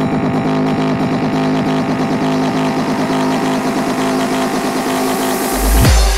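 Darksynth electronic track with sustained low synth chords; a rising noise sweep builds through the second half and ends in a deep sub-bass hit near the end.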